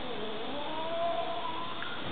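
A domestic cat giving one drawn-out mewing murmur as it eats from its bowl. The call dips in pitch, then rises and holds for about a second and a half, over a steady background hiss.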